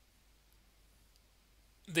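Near silence: room tone with a faint low hum, until a man's voice starts just before the end.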